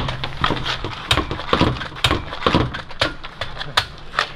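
Hockey pucks hitting a hard LINE-X-coated surface, a run of sharp, irregular knocks about two or three a second.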